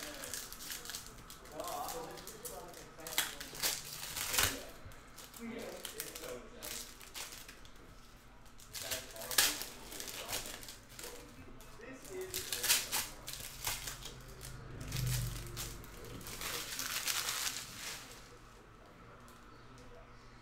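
Hockey card pack wrappers being torn open and crinkled by hand, in a series of short, sharp crackling bursts. The packs tear cleanly from the top, but the glued bottom seams tear rough.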